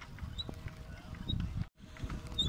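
Bicycle being ridden on a road, with low wind and road rumble on the microphone and a few faint high chirps and clicks, which the rider puts down to a problem with a pedal. The sound cuts out briefly near the end.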